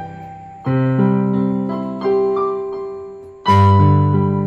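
Yamaha portable keyboard played with its piano voice: a slow melody with chords struck about two-thirds of a second in and again at about two seconds, then a louder chord near the end, each left to ring and fade away.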